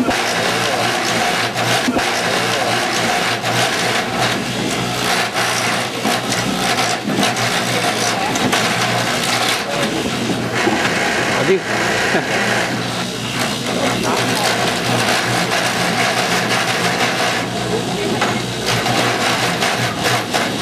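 A 70-year-old duplicating lathe carving a wooden clog from green wood: a steady motor hum under the dense, continuous chatter of its knives cutting, cutting in suddenly at the start.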